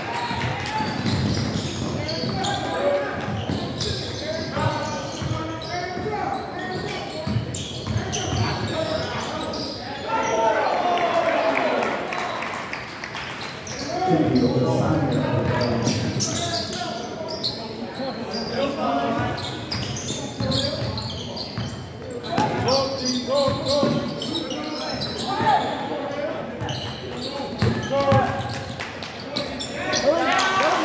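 Basketball game sounds in a gymnasium: a basketball bouncing on the hardwood floor amid indistinct shouting and chatter from players and spectators, echoing in the large hall.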